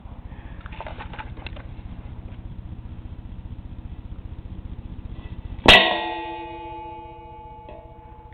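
Homemade airsoft claymore going off with a single sharp bang about three-quarters of the way in. The metal pan it sits in rings with several clear tones that die away over about two seconds. A low steady hum runs underneath before the bang.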